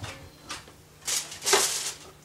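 A light click, then two brief rustling, scuffing noises about a second in.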